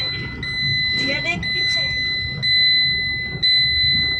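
A car's electronic warning buzzer sounding a steady high-pitched tone, broken by a short gap about once a second, over low engine and road rumble inside the cabin.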